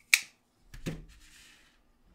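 A closed Ontario RAT1 folding knife set down on a hard tabletop: a sharp click, then a duller knock under a second later, followed by a brief faint scrape as it is slid into place.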